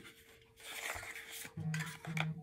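Paper or plastic packaging rustling as a small skincare box is opened by hand, followed near the end by a short closed-mouth hum, "mm".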